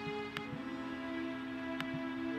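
Background music of sustained, held tones from a Nintendo game soundtrack, with two short clicks, one about a third of a second in and one near the end.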